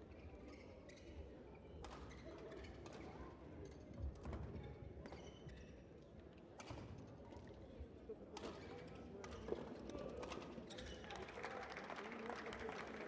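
Quiet sports-hall ambience: a low murmur of voices with scattered knocks and taps, the murmur growing busier near the end.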